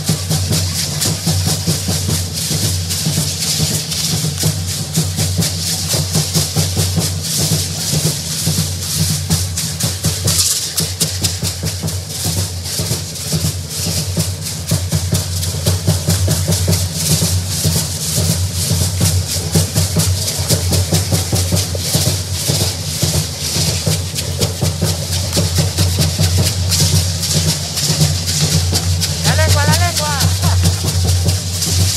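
Many hand rattles shaken by a troupe of dancers in a fast, steady rhythm, with drumming underneath.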